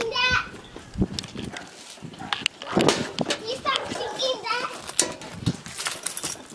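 Young children's high-pitched voices chattering and calling out as they play, with knocks and rubbing from the camera being handled.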